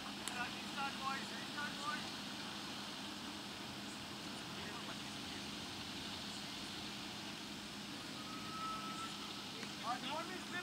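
Distant voices of cricket players calling out in the first two seconds, over a steady low hum and open-air background noise, with a brief steady tone near the end.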